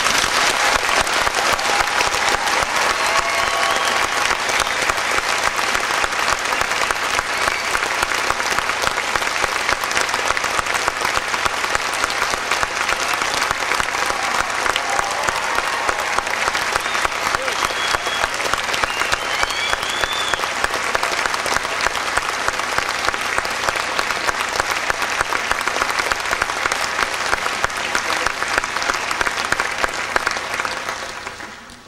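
Audience applause in a concert hall: a dense, steady clapping that breaks out as the band's music ends and carries on unbroken at a loud level.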